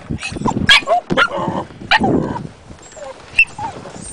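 A dog barking and yipping at dolphins swimming beside the boat: several short, sharp yelps at uneven intervals, some with a brief whine sliding down in pitch.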